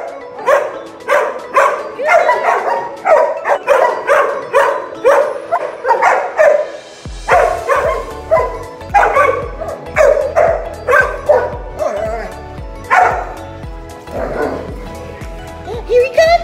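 A dog barking over and over, about two barks a second, over background music; a deep bass beat joins the music about halfway through.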